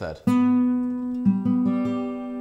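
Acoustic guitar sounding a G major chord in the C shape, built from octave Gs including the open G string plus the major third. It is struck once about a quarter second in and left ringing, with three more notes plucked in quick succession just past the middle.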